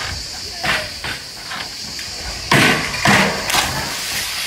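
A diver entering a swimming pool from a springboard: a loud splash about two and a half seconds in, then more splashing for about a second, over a steady hiss.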